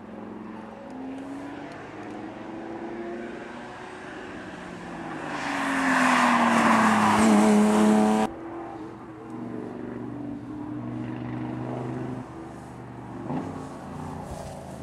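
Rally cars at racing speed: one engine grows louder and passes close about six to eight seconds in, its pitch falling as it goes by, then the sound cuts off suddenly. Another car's engine is then heard more faintly, approaching.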